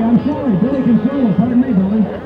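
A man's voice speaking loudly over a public-address system, over the murmur of a large crowd of many voices.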